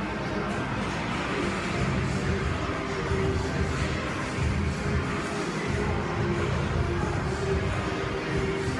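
Music playing, with no clear sound of the barbell or plates.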